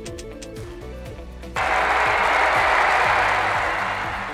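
Prize-wheel ticking sound effect slowing to a stop over background music. About a second and a half in, a sudden loud burst of applause marks the win and fades away over the next couple of seconds.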